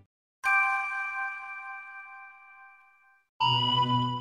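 A chime sound effect: one bell-like ding about half a second in, ringing and slowly fading away over nearly three seconds, then a second, steadier electronic tone with a low hum starting near the end.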